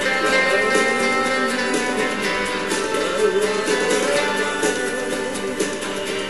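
Instrumental stretch of a song: strummed acoustic guitar playing steadily.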